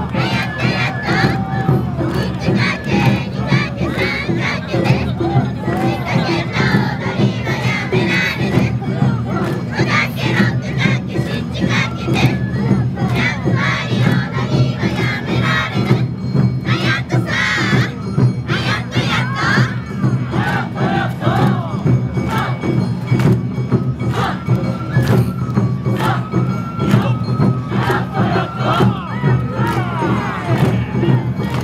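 Awa Odori dancers shouting chanted calls in unison over the troupe's festival band, its drums pulsing steadily underneath. A high note is held steadily in the last few seconds.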